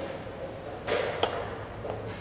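A wooden chess piece set down on the board with a short knock, then, a moment later, one sharp click as the chess clock button is pressed to end the move.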